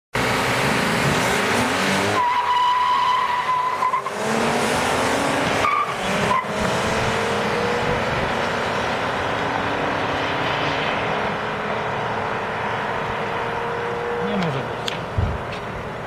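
Two cars launching hard at the start of a quarter-mile drag race, tyres squealing. Their engines then rev out with slowly rising notes as the cars accelerate away, the sound fading gradually with distance near the end.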